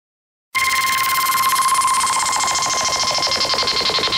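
Electronic music starting abruptly about half a second in: a steady high beep tone over a fast-pulsing synthesizer noise sweep that falls slowly in pitch.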